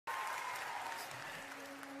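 Applause from an audience, with a faint held tone underneath.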